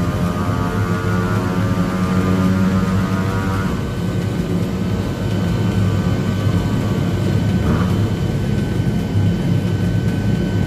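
Small motorcycle engine running on a chassis dyno, its pitch easing slightly lower over the first few seconds and then holding steady.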